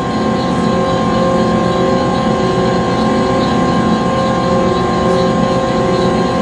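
Conveyor belt machinery running steadily: a constant motor hum with several held tones over a low, fast rattling rumble.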